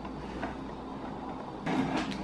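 Hand-held can opener being worked on the rim of a metal can: mostly faint handling, with a short spell of metal scraping and clicking near the end as the cutter starts to bite.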